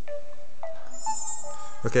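Samsung Epic 4G's startup chime: bell-like notes, a few at first and more, higher ones joining about a second in. The phone is booting normally instead of into recovery mode, so the button combination did not work.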